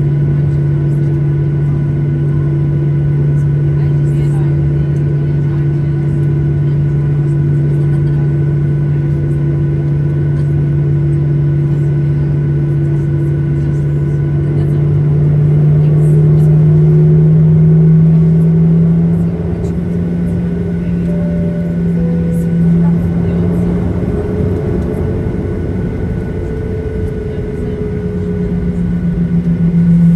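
Boeing 737-800's CFM56 turbofan engines running at taxi power, heard from inside the cabin as a steady low hum. The hum's pitch rises about halfway through as thrust is added, sags, then rises again near the end.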